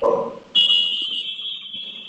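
A steady high-pitched electronic tone begins about half a second in and holds without a break, after a brief lower sound at the very start.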